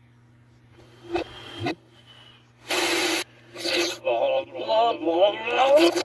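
Cartoon soundtrack played backwards through a laptop speaker: a couple of short noisy bursts, then garbled reversed voices building toward the end, over a steady low hum.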